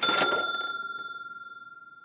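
A single bell-like ding, struck once, ringing on one clear pitch and slowly fading away.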